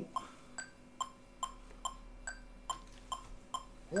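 Metronome clicking steadily at 140 beats per minute, a little over two ticks a second, over a faint steady hum.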